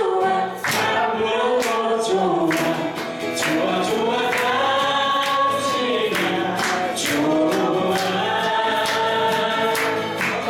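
A man and a woman singing a duet in harmony to two steadily strummed acoustic guitars.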